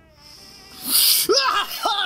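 A man screaming: a sudden harsh, breathy burst about a second in, breaking into a run of wavering yells that rise and fall in pitch.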